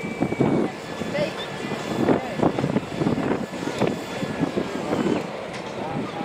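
Indistinct voices talking over continuous outdoor background noise.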